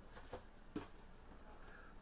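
Faint handling of boxed Funko Pop figures: two soft taps, about a third of a second and nearly a second in, over quiet room hiss.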